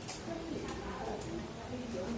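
Indistinct speech: voices talking, too unclear to make out the words.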